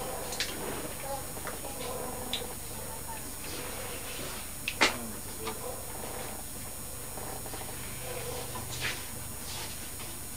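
Faint low voices murmuring in a small room over a steady hiss, with a few light clicks and one sharper click about five seconds in.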